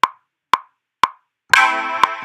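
Logic Pro X metronome count-in at 120 bpm: three short woodblock-like clicks half a second apart. About a second and a half in, on the downbeat, a bright sustained synth chord from the Aluminum Bandpass patch comes in as the recording starts.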